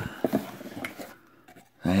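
Cardboard shipping box being handled as its flaps are pulled open, with a few light taps and scrapes in the first second.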